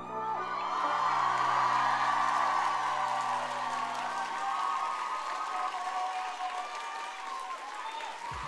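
Audience cheering and applauding as a dance song ends, loudest in the first few seconds and then tapering off. A held low chord left over from the backing track fades out about five seconds in.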